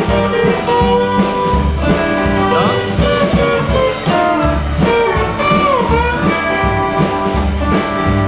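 Rockabilly band playing an instrumental break without vocals: a steel guitar plays a lead line with sliding notes over upright bass and acoustic guitar.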